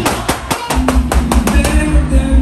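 Dancehall music played loud through a sound system, with sharp percussion on a steady beat; the heavy bass cuts out for about half a second shortly after the start, then drops back in.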